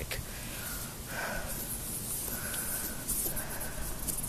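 Rustling and rubbing of a phone being handled against cloth while its camera lens is wiped clean.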